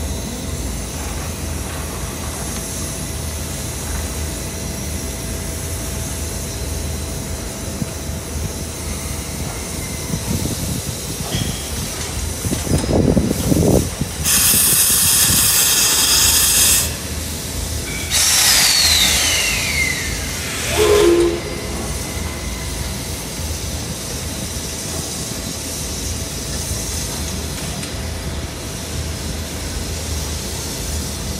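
Steam locomotive blowing off steam: two loud hisses a few seconds long about halfway through, the second with a falling whistly tone in it. A few low puffs come just before the hisses, and a short low toot follows them.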